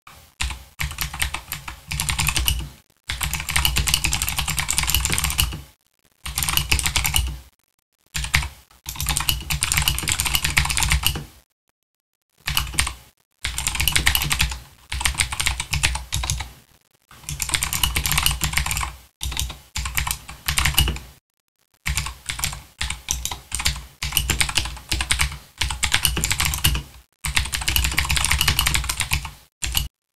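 Typing on a computer keyboard: quick runs of key clicks lasting a few seconds each, broken by short silent gaps.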